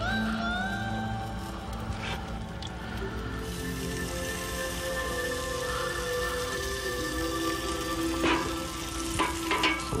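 Melted butter sizzling on zucchini sticks on a hot grill grate as they are brushed, the hiss thickening a few seconds in, with a few light clicks of the brush and tools, over background music.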